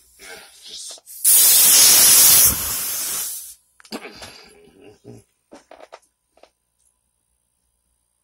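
High-pressure air hissing out at a valve fitting on a homemade big-bore air rifle, loud for a little over a second, then weaker for another second before it cuts off suddenly. Small clicks and knocks of handling the fitting follow.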